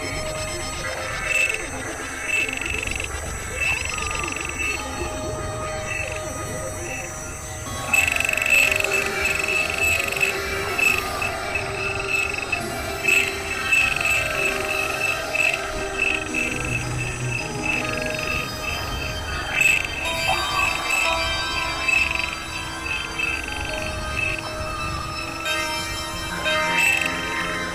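Dense, layered experimental electronic music of overlapping drones and tones. It gets louder about a third of the way in, where a high pulsing note starts repeating rapidly.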